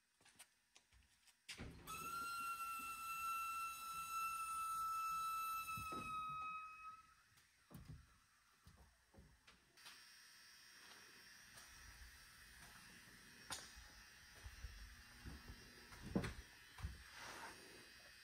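A small motor whines steadily at one high pitch for about five seconds, then drops in pitch as it spins down and stops. A few light knocks and thunks follow.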